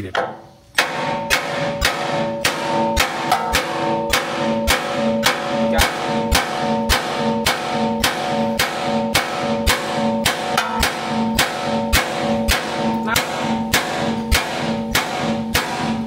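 Ball-peen hammer beating steadily on the end of a seized front leaf-spring bolt, which has a nut threaded flush on it to protect the threads, to drive it out of the spring eye. The blows come about three a second, each with a metallic ring, and start suddenly about a second in.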